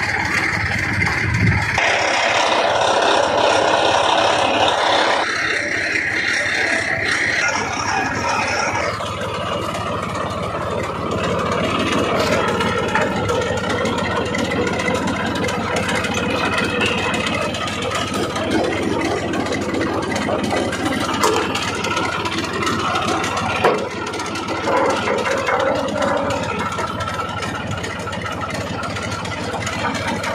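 Tractor engine running steadily, powering a hydraulic borewell pipe-lifting rig. It sounds louder and harsher for several seconds starting about two seconds in, then settles to an even run.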